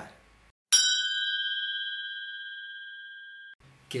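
A single bell-like ding, struck once and ringing with a clear high tone that fades slowly for nearly three seconds before cutting off abruptly. It is an edited-in chime over dead silence, marking the move to a new section.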